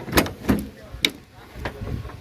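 Pickup truck's cab door being opened: a few knocks and a sharp metallic latch click about halfway through.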